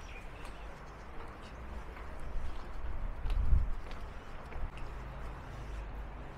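Footsteps climbing a long flight of brick stairs, with a low thud about three and a half seconds in, the loudest moment.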